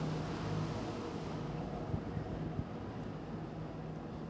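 Room tone of a large church between parts of a service: a steady low hum under faint background noise, with two small knocks about two seconds in.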